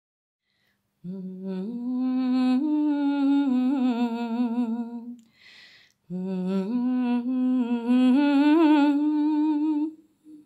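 A single voice humming a slow, wavering melody in two phrases, starting about a second in, with a short break between the phrases about five seconds in.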